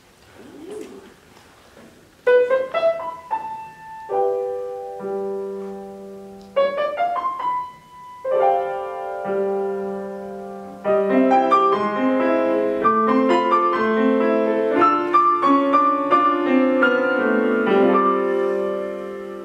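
Piano playing a song's introduction: after a quiet first two seconds, two rising runs settle into held chords, and the playing grows fuller and busier about eleven seconds in.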